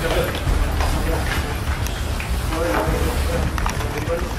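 Men's voices giving urgent commands in Indonesian to bring everything out ("keluarin barangnya semua"), over a steady low rumble and scattered knocks of hand-held camera handling and people moving in a cramped room.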